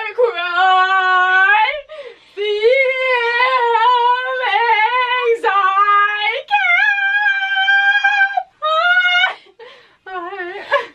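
A young woman's voice vocalising loudly in long, held high notes, several in a row with short breaks between them, the pitch mostly steady, wavering in the middle. It fades to quieter sounds near the end.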